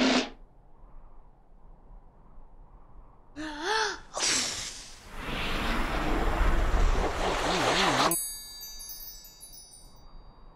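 Children's-TV sound effects. A short vocal 'ooh' is followed by a long whooshing rush with a wobbling low drone and deep rumble for about four seconds. About eight seconds in comes a tinkling, descending magic-sparkle chime as a second flag pops into place.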